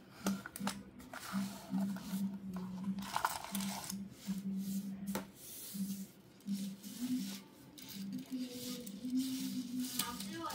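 A cardboard toy box is opened and a small plastic transforming figure is pulled out and handled on a tabletop. There is rustling and tearing of packaging, with sharp plastic clicks scattered throughout, under a low hum that comes and goes.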